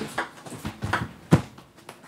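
Table tennis ball being struck and bouncing on the table in a rally: about five sharp, irregularly spaced clicks, the loudest just over a second in.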